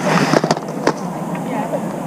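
Close handling noise on a body-worn microphone: cloth rustling and a few sharp clicks and taps as a plastic movie case is picked up, with voices murmuring in the background.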